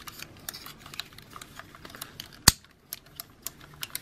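Small plastic clicks and rattles from handling a Bandai Digivolving Spirits Agumon action figure as a claw piece is fitted onto its arm, with one sharp snap about two and a half seconds in.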